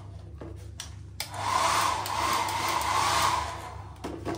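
Wall-mounted Dolphy hair dryer switched on about a second in after a couple of handling clicks, blowing with a steady rush of air and motor whir, fading near the end.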